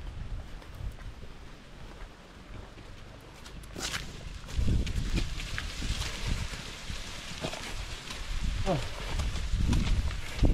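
Footsteps on a dirt footpath with rustling of brush and low bumps of wind or handling on the microphone, louder from about four seconds in, and a short falling voice-like call near the end.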